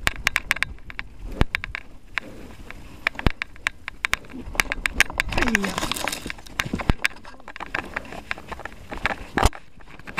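Mountain bike rattling over a rough dirt trail, with many sharp clicks and knocks from the bike and camera mount. About halfway through there is a burst of rustling as the bike pushes through tall grass and ferns, with a short vocal sound in it.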